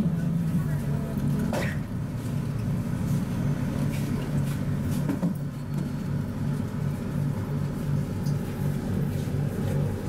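Steady low hum and rumble inside a rubber-tyred Mitsubishi Crystal Mover light-rail car, its motors and tyres running on the concrete guideway as it pulls into a station.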